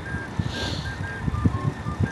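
Low rumble and soft thumps of wind and road noise on the microphone while riding a bicycle, with a faint series of short, thin beeping tones that step between a few pitches.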